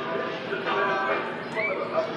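Voices over music from a loudspeaker, with steady sustained notes, and a brief high squeal that rises and falls about one and a half seconds in.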